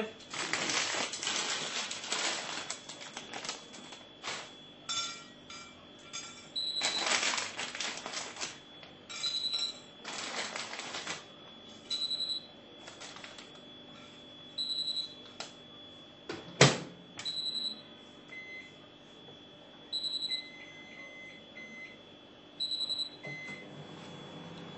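A microwave oven being loaded with raw kerupuk crackers: rustling and clattering as they are handled in the first half, and a single sharp click about two-thirds of the way through as the door shuts. Short, high electronic beeps repeat every two to three seconds.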